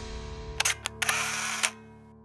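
Camera shutter sound effects from a title sting, a couple of quick clicks and then a longer run of shutter noise, over a held music chord that fades out near the end.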